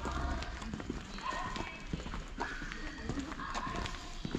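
Footsteps of a person walking on an asphalt road, a regular step a little less than twice a second, with faint voices in the background.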